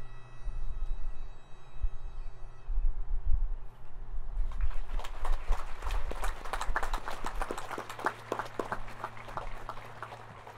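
Wind rumbling on the microphone as a bagpipe's last notes fade, then a crowd clapping close by, starting about four and a half seconds in.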